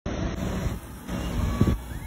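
Outdoor background noise with a steady low rumble.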